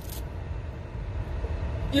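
Steady low rumble of a car's engine running, heard inside the cabin.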